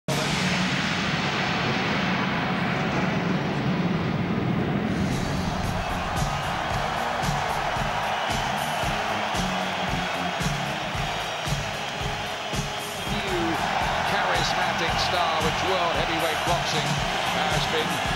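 Boxer's ring-walk entrance music played loud through an arena sound system with a steady beat, over the noise of a packed crowd.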